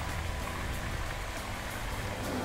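A steady, even rushing noise with faint background music under it.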